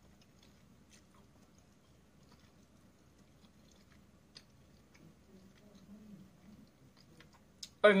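Quiet chewing of a mouthful of pasta, with faint scattered small clicks.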